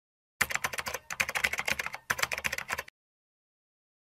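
Rapid computer-keyboard typing: fast runs of key clicks, with two brief pauses about one and two seconds in, stopping a little before three seconds.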